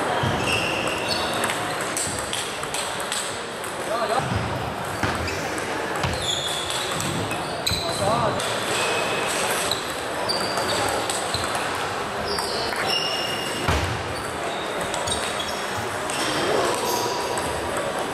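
Table tennis ball being struck by bats and bouncing on the table during rallies: short, sharp clicks at irregular intervals.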